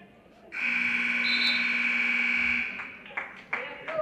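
Gym match-clock buzzer sounding once for about two seconds, marking the end of the first wrestling period.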